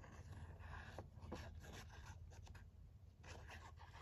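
Faint scratchy rubbing and small irregular ticks of a PVA glue bottle's nozzle drawn across paper as glue is squeezed out in lines, over a low steady hum.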